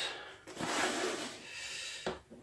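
Rubbing and rustling of a foam-padded, fabric-covered prop hand being handled, starting about half a second in as a steady scraping noise.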